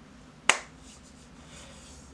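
One sharp, very short hand-made click about half a second in, a finger snap or single hand clap, over faint room tone.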